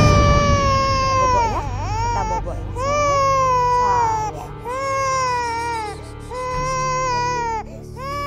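A baby crying in a series of long wails, about four in all, each a second or so long and falling slightly at the end, with short catches of breath between them. Soft background music plays underneath.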